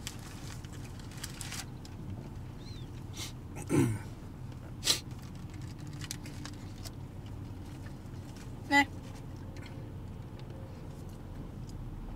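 A man chewing a mouthful of sandwich in a car, over a steady low cabin hum. Two short vocal noises come about four seconds and about nine seconds in, with a click near five seconds.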